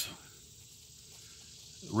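Faint steady high-pitched insect chorus in a quiet outdoor pause.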